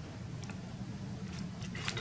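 Painting tools being picked up and handled: a few light clicks and rustles, most of them about one and a half seconds in, over a low steady room hum.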